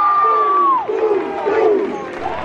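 Bench players and crowd cheering, led by one long, high held yell that breaks off about a second in, followed by shorter shouts.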